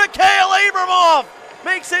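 Speech: a male hockey play-by-play announcer's excited goal call, one long held shout of about a second that falls away at the end, then more talk.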